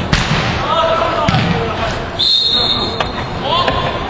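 Indoor soccer play in a large hall: players' shouting voices and the thud of the ball being kicked and hitting the walls. A brief high steady tone sounds a little past halfway.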